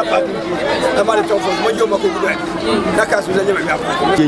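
A man speaking, with other voices chattering around him and a steady low hum that stops about three seconds in.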